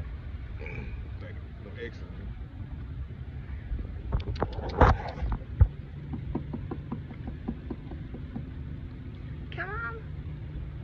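Low steady rumble of an idling boat motor, broken by a quick run of sharp knocks about four to five and a half seconds in, the loudest near five seconds; a steady low hum comes in after the knocks.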